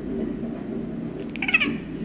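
Domestic cat giving a short chirping chatter about one and a half seconds in, a quick run of clicks followed by a high chirp, the excited call a cat makes at a bird it is watching.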